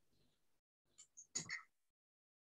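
Near silence on a video-call audio line, broken by a couple of faint, very short sounds about a second and a half in.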